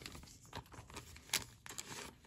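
Faint handling of a trading card and a clear plastic card sleeve: soft rustling, with a few sharp crinkles in the second half.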